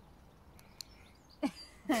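Quiet outdoor background with a single faint click a little under halfway through, then a short vocal sound and a laugh starting at the very end.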